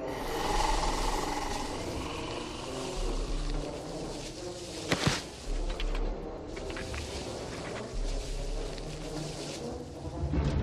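Horror-film sound design: a dense, eerie, noisy drone with deep low pulses every two to three seconds and one sharp crack about five seconds in.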